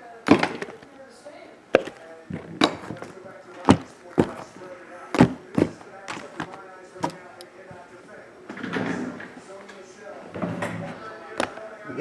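A series of sharp knocks, about eight in the first seven seconds, as sealed cardboard trading-card hobby boxes are handled and set down on a table. Softer handling noise follows.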